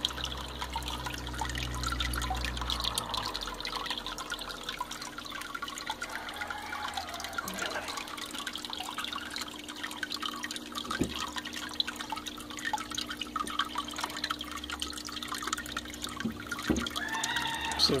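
Water trickling and splashing in a small turtle tank, with scattered small knocks and splashes as a hand reaches into the water to catch a turtle; a steady low hum runs underneath.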